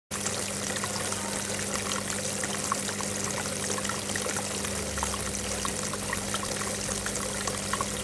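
Water from an Easy Fountain Nootka Springs tiered cascade garden fountain pouring and trickling steadily down its tiers, with many small splashes.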